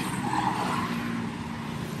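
Road traffic passing on a highway: a rush of tyres and engines that swells in the first second and then eases off.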